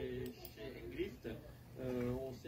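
Faint voice and music-like held tones at low level, in a pause between louder speech.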